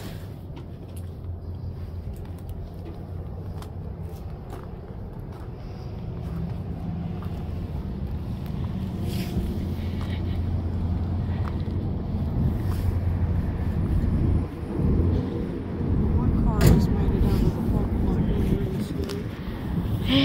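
A car driving slowly across a snow- and ice-covered parking lot, its engine and tyres making a low hum that grows louder as it comes near.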